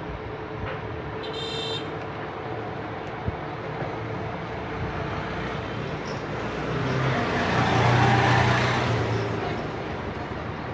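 Steady background traffic noise, then a motor vehicle passing: its engine hum and road noise rise about seven seconds in, peak, and fade before the end.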